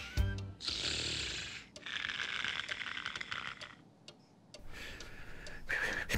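Cartoon snoring sound effect: a few long, hissy snore breaths of about a second or two each, with short pauses between them, over light background music.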